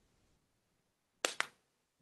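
Two quick, sharp clicks in close succession about a second and a quarter in, against near silence.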